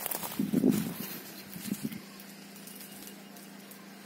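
Curved billhook knife trimming a plum stick, with light knocks of the blade on the wood. A short, low muffled sound comes about half a second in.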